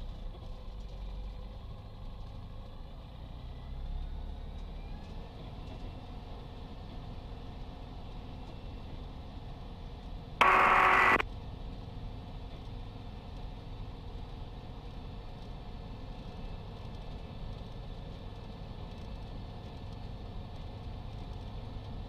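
Light aircraft's engine idling steadily in the cockpit, a low hum with the propeller turning. About halfway through, a brief loud burst of radio hiss cuts in and stops.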